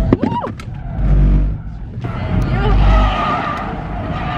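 Car tyres squealing and skidding through a hard swerve at about 70–80 km/h with electronic stability control switched off, heard from inside the cabin. Heavy low rumbling comes in twice, and the squeal is strongest in the second half.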